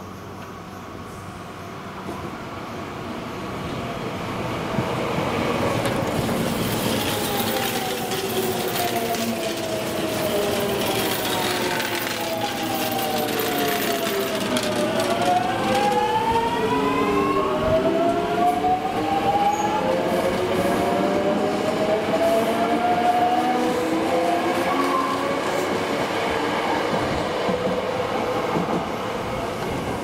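Two Hankyu 8000-series electric trains. One rolls in and brakes, its traction-motor whine falling in pitch as it slows. About halfway through, the other pulls away, its motor whine climbing in pitch as it accelerates.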